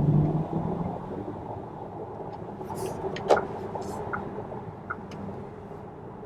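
Cabin noise inside a Volkswagen ID. Buzz electric van on the move: a steady low rumble of road and tyre noise with no engine sound, really quiet. A low hum is loudest at the very start and fades within half a second, and a few faint clicks come in the middle.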